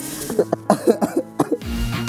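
Short, broken vocal sounds cut by sharp clicks. About a second and a half in, promo music starts, with a deep bass pulse repeating about three times a second.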